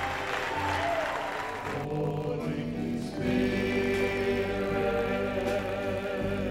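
Church congregation applauding and calling out, giving way about two seconds in to music: held, sustained chords with voices singing.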